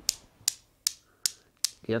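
Newton's cradle with LED-lit spheres swinging, the end balls striking the row in sharp, regular clicks about two and a half times a second.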